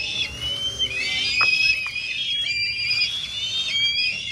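Several kites calling at once: shrill, whistled cries that overlap one another without a break, some rising at the start and dropping away at the end.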